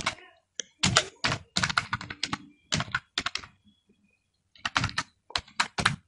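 Typing on a computer keyboard: quick runs of keystrokes, broken by a pause of about a second just past the middle.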